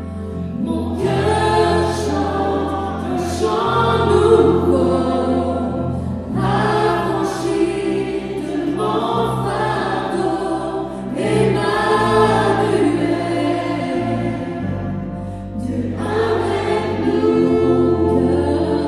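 Worship band performing a gospel-style song: several voices singing together in phrases of a couple of seconds, accompanied by a keyboard with sustained low bass notes.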